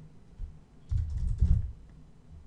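Typing on a computer keyboard: a short run of keystrokes, dull thuds with light clicks, about a second in.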